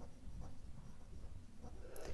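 Ballpoint pen writing on a sheet of paper: faint scratching as the letters are written.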